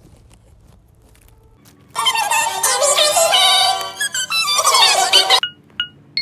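For about two seconds there is only a faint low hiss. Then a music clip with singing plays loudly until about five and a half seconds in. Near the end come two short electronic beeps of a recording countdown timer.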